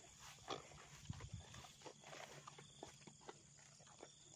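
Near silence: faint outdoor ambience with scattered soft clicks and a faint steady high tone.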